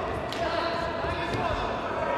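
A futsal ball being kicked and thudding on a hard sports-hall floor, with a couple of sharp impacts, over players' footsteps and indistinct shouts in a large hall.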